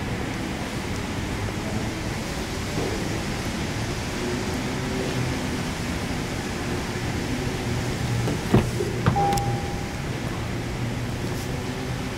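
Steady hum of a large indoor garage. About two-thirds of the way through comes a sharp click as the SUV's door is opened, then a short single beep of about a second.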